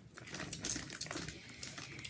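A run of small, irregular clicks and rustles close to the microphone: handling noise from the hand-held recording device.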